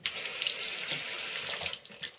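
Water tap running into a sink, turned on suddenly and shut off just before two seconds, as a table tennis ball is rinsed under it.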